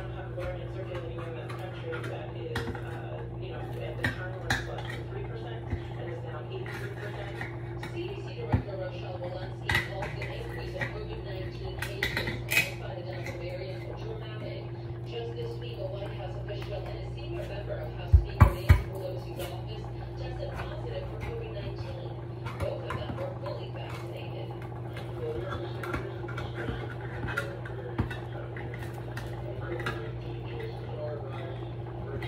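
Kitchen clatter of pots, utensils and cans: scattered clicks and knocks, with three sharp knocks in quick succession a little past the middle, over a steady hum.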